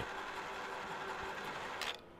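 A 500 kg Hilka electric scaffold hoist's motor running steadily as it winds in its wire rope, hauling a bulk bag up; it stops with a click near the end.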